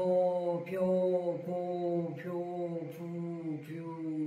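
A woman's voice chanting one syllable after another on a single steady low pitch, a new syllable about every three-quarters of a second, as a voice-training exercise.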